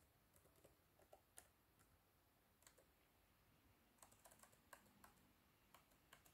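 Faint laptop keyboard keystrokes, scattered single taps with a quick run of several about four seconds in, as a password is typed into a confirmation field.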